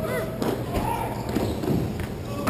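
Thuds and knocks from a ball hockey game, sticks and ball striking the court and boards several times, with players shouting.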